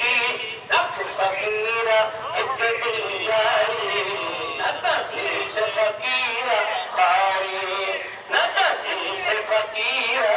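A man singing a devotional Urdu ghazal in long, wavering, ornamented lines, with musical accompaniment.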